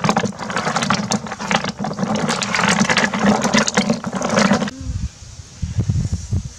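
Snail shells clattering and scraping against each other and the plastic in a bucket as a hand stirs through them: a dense run of rapid clicks. It stops abruptly about three-quarters of the way through, giving way to low, uneven rumbles.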